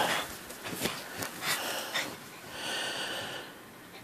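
A few light knocks and rustles from a subwoofer and its wires being handled, then a short breathy exhale through the nose about two and a half seconds in.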